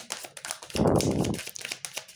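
A deck of oracle cards being shuffled by hand: quick light clicks and snaps of card stock, with a louder rushing swish about a second in.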